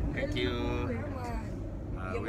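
Laughing and a voice over the steady low rumble of a moving bus, heard from inside its cabin.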